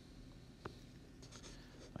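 Near silence: room tone with a faint short tap about two-thirds of a second in and a few fainter ticks later, a stylus touching a tablet screen.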